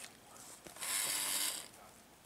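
A Halloween vampire animatronic's small gear motor whirs for about a second, with a few faint clicks around it, as the figure moves between its spoken lines.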